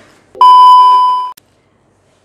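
Loud electronic beep: one steady high tone lasting about a second, starting a little under half a second in.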